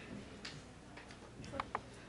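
Quiet room tone with a few faint clicks, and two short, high squeaks about one and a half seconds in.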